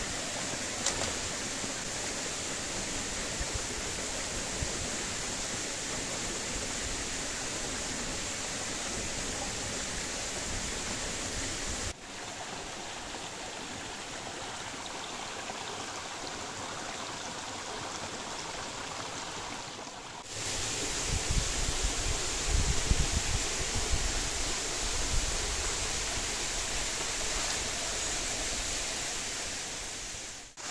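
Steady rush of a small waterfall and its stream. The sound changes in level at about 12 seconds and again at about 20 seconds, and the last ten seconds carry a deeper rumble.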